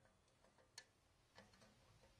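Near silence: faint room tone with a few soft, short clicks scattered through it, the clearest a little under a second in.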